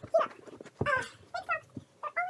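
A girl's wordless whining and moaning: several short cries that rise and fall in pitch, with a couple of dull thuds among them.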